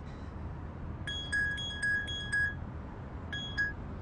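A mobile phone's message alert: a quick run of short electronic beeps, then two more about a second later, over the low hum of a car cabin. The alert signals an incoming message.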